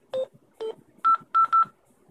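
Yaesu FT-60 handheld transceiver's keypad beeping as keys are pressed to enter the frequency 430.00: two short lower beeps, then three quick higher beeps.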